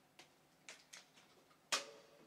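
A plastic water bottle being handled: a few faint clicks, then a louder knock near the end as it is set down.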